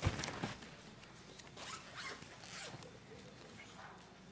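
A sharp knock, then a few faint, short rustling and scraping handling noises.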